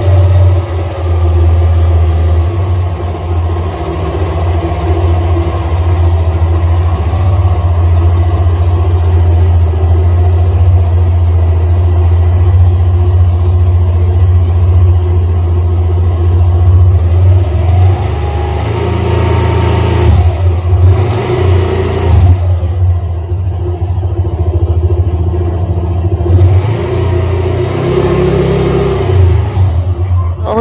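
A motor vehicle engine running steadily close by, with its note shifting a few times in the second half.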